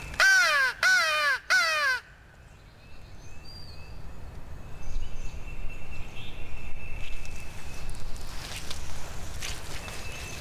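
Mouth-blown crow call sounded by a turkey hunter, three harsh caws in quick succession in the first two seconds, each falling in pitch; a locator call used to make a gobbler answer.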